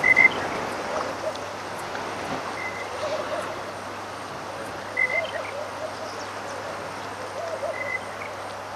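Waterhole ambience: short high chirps repeating about every two and a half seconds and lower warbling animal calls over a steady hiss. There are a couple of brief louder sounds right at the start.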